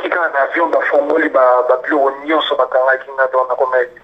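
Speech only: one voice talking without pause, thin and cut off at the top like a voice played through a phone's speaker.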